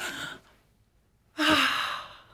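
A woman's breathy exhalations: a short soft one at the start, then a louder, longer airy breath out about a second and a half in.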